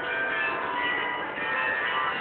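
Bells ringing a melody, several notes at a time, each note ringing on as the next begins, like a carillon.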